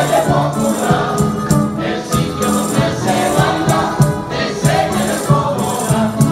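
Live Canarian folk music for a berlina: a group singing together in chorus over a steady, rhythmic instrumental accompaniment.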